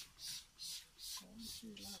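Hand trigger spray bottle squeezed rapidly, giving short hisses of mist at about three a second, spraying soap solution onto plants.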